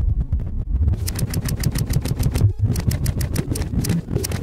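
Experimental electronic soundtrack: a deep rumble under a rapid, even clicking pulse of about eight clicks a second, which breaks off briefly just past halfway.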